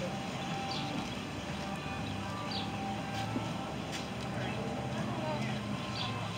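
Outdoor ambience: faint, distant voices over a steady low hum, with no loud event.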